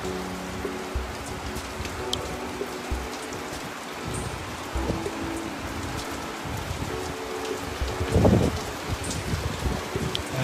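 Steady rain falling, a continuous hiss of drops, with faint held musical tones underneath and a brief louder noise about eight seconds in.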